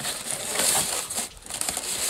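Clear plastic packaging crinkling and rustling as it is handled, a continuous dense crackle.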